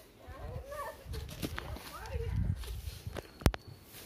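Footsteps and handling noise over dry sticks and leaf litter, with faint voices, and one sharp knock or snap about three and a half seconds in.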